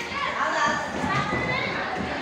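Many children's voices from a crowd of young spectators, shouting and chattering over one another.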